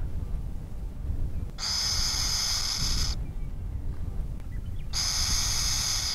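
Nestling burrowing owl giving its rattle or hiss call, the defensive hiss thought to mimic a rattlesnake: two hisses about a second and a half long each, the first starting about a second and a half in and the second about five seconds in, over a low wind rumble.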